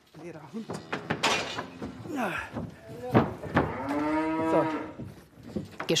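Murnau-Werdenfelser cattle mooing, the clearest call a single long moo in the second half that rises and then sags in pitch. A sharp knock comes just before it.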